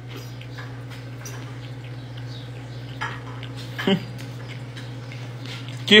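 A few light clinks of cutlery on a plate as someone eats, the sharpest about four seconds in, over a steady low hum.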